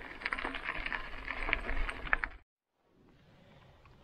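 Mountain bike rattling over a gravel dirt road, with many light, irregular clicks and clinks; the sound cuts off about two and a half seconds in.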